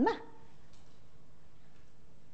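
A woman's voice ends a word right at the start, then a steady hum of room tone with a faint held tone, unchanging in level.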